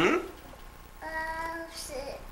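A toddler vocalizing: a short loud squeal at the very start, then a steady sung note held for most of a second about a second in.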